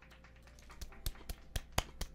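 Hand claps: about six light, separate claps starting about a second in, a quarter-second or so apart.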